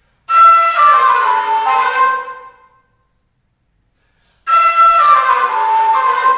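Fula (Peul) flute played in two loud, breathy phrases. Each phrase starts suddenly on a high held note and steps down in pitch, and the two are split by nearly two seconds of silence.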